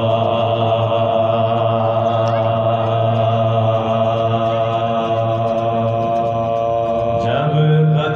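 Soz khwani, Shia elegiac chanting: a male voice holds one long low note for about seven seconds, then glides up to a higher note near the end.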